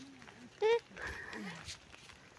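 A short high-pitched vocal call about two-thirds of a second in, followed by fainter voice sounds.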